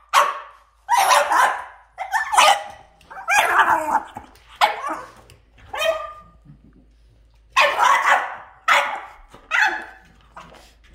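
French bulldog play-barking, short sharp barks about once a second with a brief pause a little past the middle.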